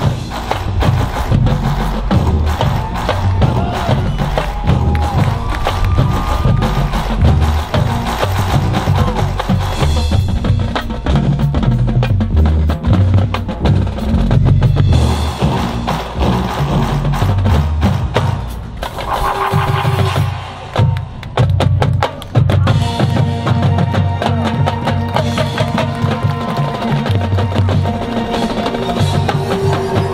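Marching band playing a percussion-heavy passage of its field show: drumline and front-ensemble percussion drive the rhythm, with pitched parts held over the drums. The music thins out briefly about two-thirds of the way through, then builds again.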